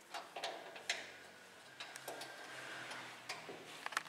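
A few light, irregular clicks and taps from hands working on the wiring inside a metal inverter cabinet, over a faint room hiss.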